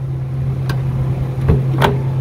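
Suzuki 4x4's engine idling with a steady low hum, while the car door is opened: a light click, then a knock and a sharp latch click near the end.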